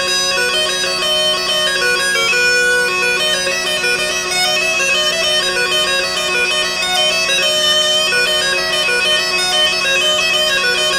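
Musette de cour, a bellows-blown French baroque bagpipe, playing a branle: a melody of short, quickly changing notes over steady drones.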